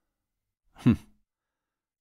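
A single short sigh from a person, falling in pitch, about a second in, in an otherwise silent dubbed soundtrack.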